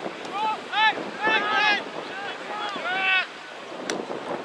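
Wind buffeting the camera microphone, heard as a steady rumbling rush. Over it comes a run of short, high-pitched arched calls for about three seconds, and there is a single sharp click near the end.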